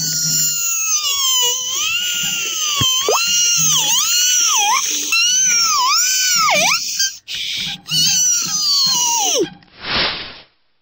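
A high-pitched, sped-up cartoon voice wailing and screaming, its pitch swooping down and back up several times and falling away near the end. A short hissing burst follows as the firework rocket takes off.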